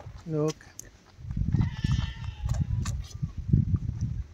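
A calf suckling at a cow's udder, with irregular low bumping and gulping from about a second in, and a faint bleat-like animal call in the middle.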